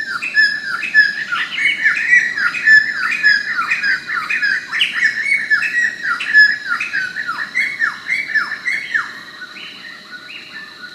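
Several forest birds calling at once: a fast, overlapping jumble of short, sharp, down-slurred notes that tails off near the end.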